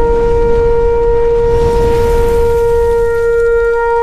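A shofar (ram's horn) blowing one long, steady note, with a low rumble underneath.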